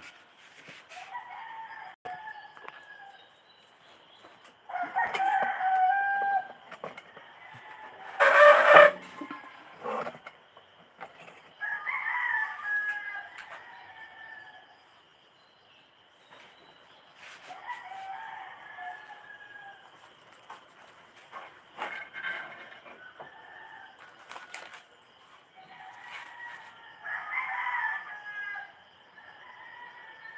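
Roosters crowing again and again, about seven crows of a second or two each spaced a few seconds apart, one much louder than the rest about eight seconds in. A faint steady high-pitched hum runs beneath.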